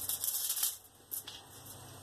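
Crinkled plastic sheet under polymer clay rustling and crackling as a hand presses down on the clay, densest in the first second, then a few faint ticks.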